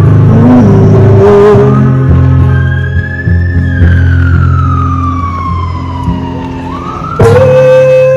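A street busker's amplified live music: sustained acoustic guitar chords under a long high tone that rises, then slides slowly down over a few seconds. About seven seconds in, a strong steady held note comes in suddenly.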